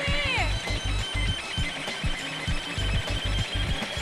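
Pachinko machine music with a steady bass beat and electronic effects, during a bonus run. A few quick falling swoops come at the start, and a thin high steady tone runs behind.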